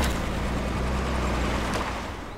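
A car driving on a dirt track: a steady low engine and road rumble under a rushing noise, with a sharp knock near the end.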